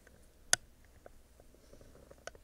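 A single sharp click about half a second in, followed by a few faint ticks.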